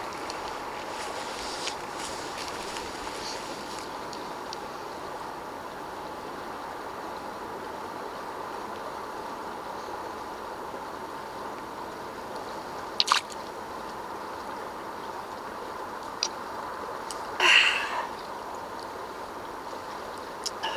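Water being sucked up through a LifeStraw filter straw from a creek, over a steady hiss. There are a couple of short clicks and, near the end, a louder sucking sound lasting about half a second.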